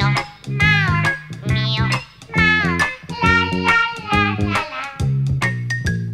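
Music track with a domestic cat meowing over it: about four drawn-out meows, each falling in pitch, laid over a steady bass line, after which plucked notes take over near the end.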